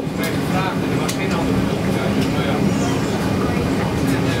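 Steady cabin noise inside a Boeing 777-300ER airliner on the ground: a constant low hum of the engines and air conditioning, with faint voices over it.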